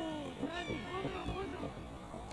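Several people on and around the football pitch shouting and calling out over each other during an attack near the goal, high strained shouts with no clear words.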